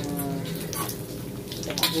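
Anchovies frying in hot oil in a wok, sizzling steadily, with a few clicks and scrapes of a metal spatula against the wok as the anchovies are pushed aside.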